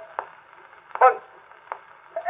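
Acoustic horn gramophone playing a 1923 78 rpm shellac record of a man's spoken comic monologue. A pause in the patter holds a couple of brief spoken syllables over the disc's faint steady surface noise. The sound is thin and tinny, with no deep bass and no high treble.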